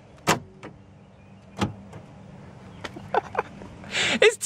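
Power door lock actuators of a 1997 GMC Sierra clunking as the newly programmed keyless-entry remote is pressed, a sign that the remote now works. There are two sharp clunks, one just after the start and one about a second and a half in, and lighter clicks near the end.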